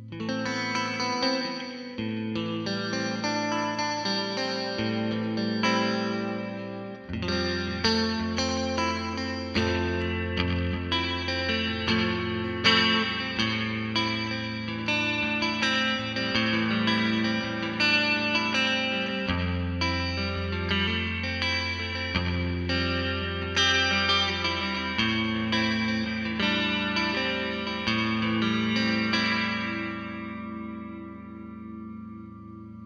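Electric guitar played through an Alien Space-O-Verb reverb pedal and a Bulldog Badbull 60 amp: picked notes and chords ringing into one another under a reverb wash, with the low note shifting twice.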